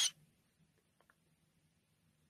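Near silence: faint low room hum after a brief hiss-like burst at the very start, with two faint ticks about a second in.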